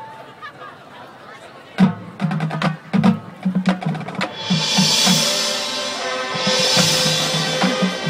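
High school marching band starting its show. After a quiet moment, sharp percussion strikes and low drum hits begin about two seconds in, and the horns enter with sustained chords about four seconds in, building in loudness.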